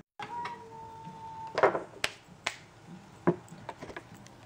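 Handling noise from a handheld camera being moved: a few sharp clicks and knocks, spaced out, with a faint steady tone in the first second and a half.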